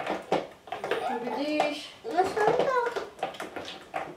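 Mostly a young child talking, with a few light clicks and scrapes of spoons stirring glue slime in plastic tubs.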